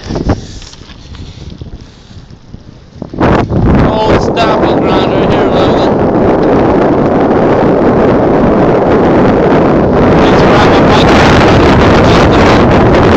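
Wind buffeting a phone's microphone while cycling: a loud, rough rushing that sets in suddenly about three seconds in after a quieter start and keeps on to the end.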